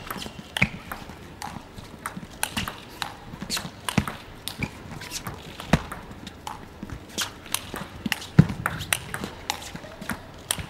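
Table tennis rally: the ball clicking off the bats and the table in quick, irregular succession, several sharp clicks a second.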